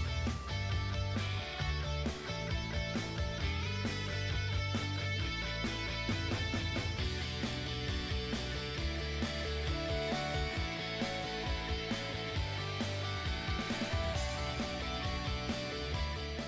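Background music, a guitar-based instrumental with a steady bass line.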